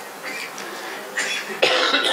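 A man coughing into his hand: a short cough a little over a second in, then a louder one near the end.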